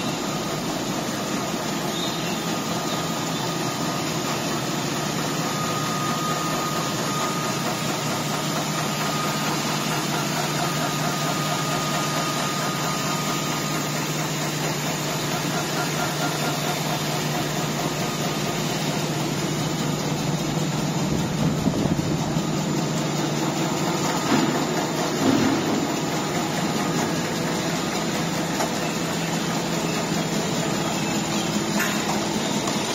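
Twin rotary paper roll-to-sheet cutting machine running steadily: a dense mechanical drone with a constant low hum, as the paper web feeds over its rollers. A few brief louder knocks come in the second half.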